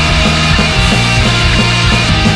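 Pop punk band recording: electric guitars, bass guitar and drums playing loud and steady through the whole stretch.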